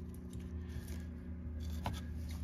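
Faint rubbing and small clicks of a stack of Donruss Elite trading cards handled in gloved hands, with one sharper tap shortly before the end as the stack is set down on the mat. A steady low hum runs underneath.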